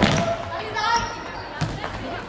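A football struck hard at the start and again near the end, with a short high shout from a young player about a second in, in the echo of a sports hall.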